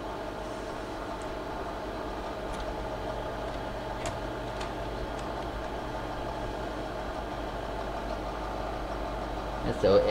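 Film projector running, a steady motor and fan hum with a few faint ticks.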